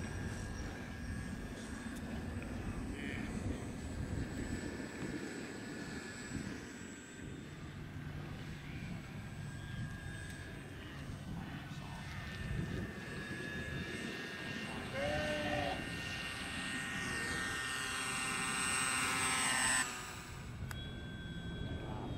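A radio-controlled model airplane's motor whining as the plane flies in close, growing steadily louder over several seconds, with wind rumbling on the microphone; the whine cuts off suddenly a couple of seconds before the end.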